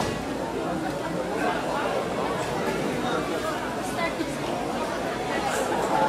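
Crowd chatter: many voices talking at once, steady, with no music.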